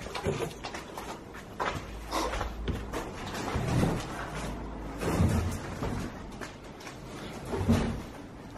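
A series of dull knocks and thuds a second or two apart, the strongest about four and five seconds in and again near the end, over a low rumble.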